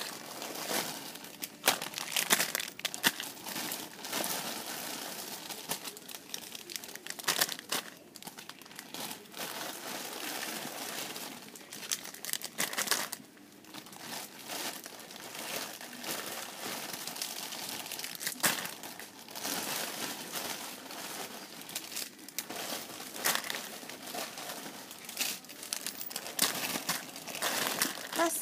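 Clear plastic wrappers of squishy toys crinkling in irregular bursts as the packets are picked up, shifted and set down. The crinkling eases off briefly about halfway through.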